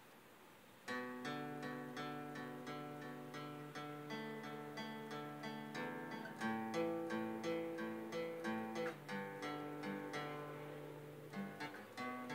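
Cutaway acoustic guitar starting about a second in and playing an instrumental intro of picked chord notes, roughly three a second, each note ringing on.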